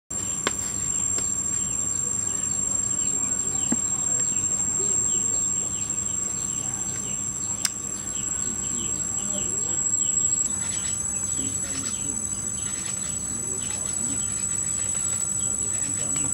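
Steady high-pitched drone of insects in chorus, with faint repeated short chirps under it; the drone steps slightly higher about ten seconds in. A couple of sharp clicks stand out, one near the start and one about halfway.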